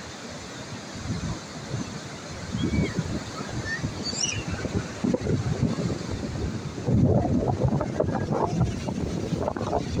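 Surf breaking and washing up a sandy beach, with wind buffeting the microphone. The buffeting gets louder and gustier from about seven seconds in.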